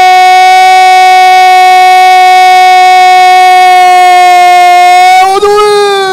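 A football commentator's long held goal cry, "Gooool", sung out on one steady high pitch for about five seconds, then wavering and dropping near the end.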